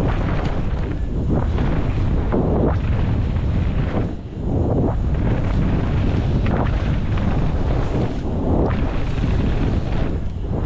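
Wind rushing over a helmet-mounted camera microphone as a mountain bike descends a dirt trail, mixed with the tyres rolling over loose dirt and stones and the bike rattling. The rush dips briefly about four seconds in.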